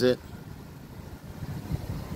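Low, uneven rumble of a car idling, heard from inside the car.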